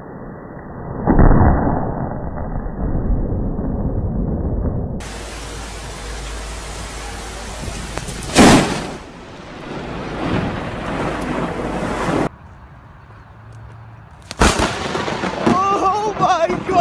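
Thunder from close lightning strikes: a sharp crack about a second in that rolls into rumbling, a second sudden loud crack past the middle, and a third near the end followed by a person's voice.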